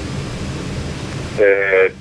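A steady hiss with a low hum during a pause in an interview. About a second and a half in, a man starts to speak, and the high hiss cuts off as his voice comes in.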